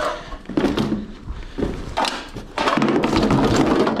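A plastic laptop being handled and set into a cardboard box: a few separate knocks and thunks, then, from about two and a half seconds in, a longer run of rustling and scraping as it goes into the box.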